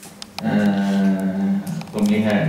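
A man's voice holding one long, level note, like a drawn-out 'uhh', for about a second and a half. It starts after a short pause that has a few faint clicks.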